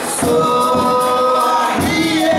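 Live Brazilian folk music: singing voices hold one long note, then change pitch near the end, over a strummed viola caipira and a hand drum beaten about twice a second.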